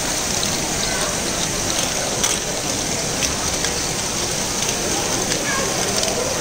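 LEGO Great Ball Contraption modules running together: a steady, dense rattling patter of small plastic balls rolling and dropping through the Technic mechanisms, with scattered sharper clicks.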